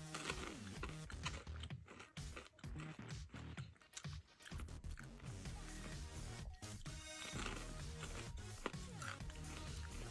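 Quiet background music, with a person crunching and chewing chocolate-covered popcorn in small irregular crunches.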